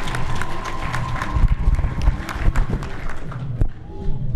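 Audience applause, many hands clapping, fading out near the end.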